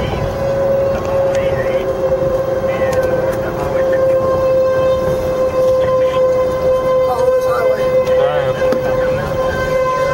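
Outdoor tornado warning siren sounding one steady, held tone whose pitch sags slightly, warning of the approaching tornado. It is heard from inside a moving vehicle over low road rumble.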